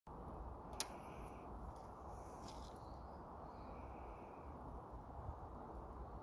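Quiet woodland background with faint high chirps, and one sharp click a little under a second in as an arrow is nocked onto a longbow's string, with a softer tick later.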